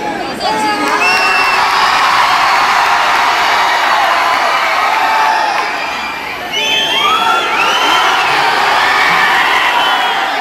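Large hall full of students cheering and shouting, with high whoops rising and falling over the din. The noise dips briefly about six seconds in, then swells again.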